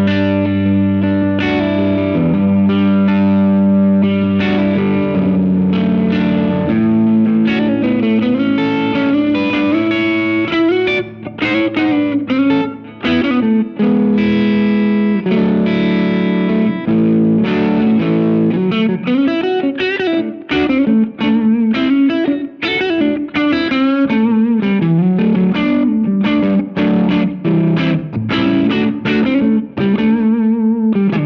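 Les Paul electric guitar played through a Greer Royal Velvet class-A British-style overdrive pedal with its tone knob turned back a bit: held chords for the first several seconds, then lead lines with string bends and vibrato.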